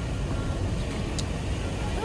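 Steady low road and engine rumble inside a van's cabin while it drives, with a brief click about a second in.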